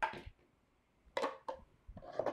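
Light knocks and clatter of plastic kitchenware, a mixing bowl and a measuring jug, being handled and set down on a counter: a short sound at the start, then two brief knocks a little past a second in.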